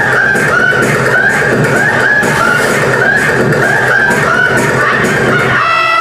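Recorded laughter from a performance track, a laugh repeating about twice a second over a dense background. Near the end it cuts suddenly into guitar-led music.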